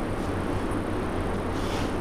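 Steady low hum with a faint hiss: room background noise.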